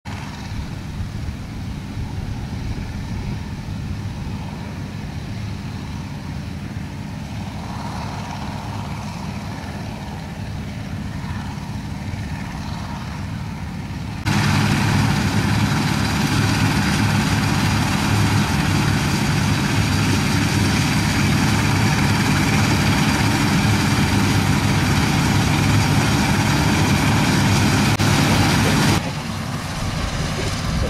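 1960s Massey Ferguson 400 combine harvester working in standing barley: a steady engine drone with the machinery's clatter. It is faint and distant at first, much louder and closer from about halfway, then drops back to distant just before the end.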